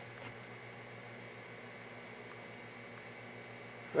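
Faint steady hiss with a low hum: the room tone of the bench, with no distinct event.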